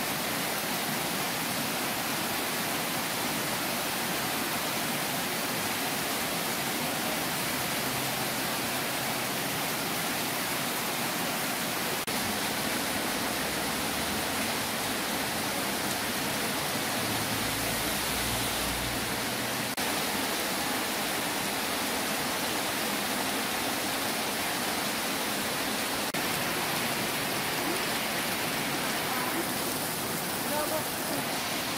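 Heavy tropical downpour: rain falling hard and steadily, an even, unbroken hiss.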